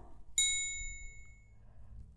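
A single bright bell-like ding, a notification chime sound effect, starting about half a second in and ringing away over about a second.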